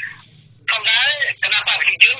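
Speech only: a voice talking in Khmer, starting after a brief pause, thin and narrow as over a telephone line.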